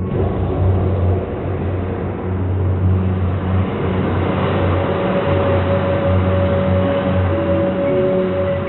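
Soundtrack of a projected film played over loudspeakers: a dense rushing rumble with a low droning hum, starting abruptly, with a steady higher note joining about halfway through.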